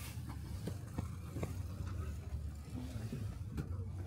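Steady low outdoor background rumble, with a few faint clicks from handling cotton T-shirts on a table.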